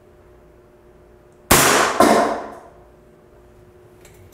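An FX Ranchero Arrow air-powered arrow shooter firing: one sharp crack about a second and a half in, followed half a second later by a second sharp impact that rings out briefly.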